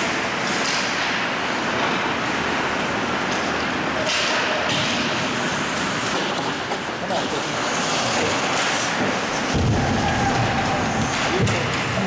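Ice hockey game in an indoor rink: a steady wash of spectator voices and on-ice play noise, with a heavy low thud from a body check about ten seconds in.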